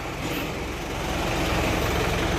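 A vehicle engine running steadily, a low rumble with a noisy hiss over it, growing a little louder.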